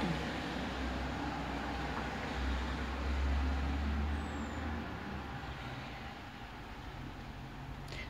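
Distant road traffic: a low, steady rumble that swells in the middle, as a vehicle goes by, then fades slightly.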